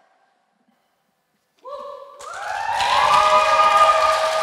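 About a second and a half of near silence, then a few people start whooping and clapping after the song ends. The cheers and applause swell and ring on with a long echo in a large hard-walled hall.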